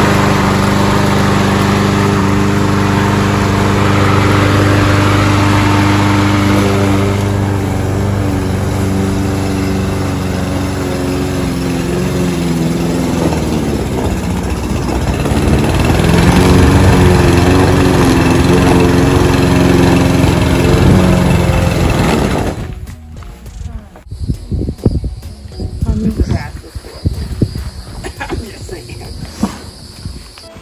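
A walk-behind push mower's small petrol engine runs steadily after starting. Its pitch sags briefly and recovers midway, then the engine cuts out abruptly about three-quarters of the way through. Scattered knocks and rattles follow.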